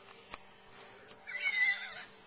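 A woman's high-pitched excited squeal, wavering in pitch, lasting about half a second near the end. It follows a single sharp click of the camera being handled.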